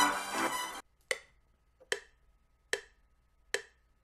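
A synth-and-drum beat playing in FL Studio stops just under a second in. Four evenly spaced metronome ticks follow, a little under a second apart: FL Studio's one-bar count-in before recording.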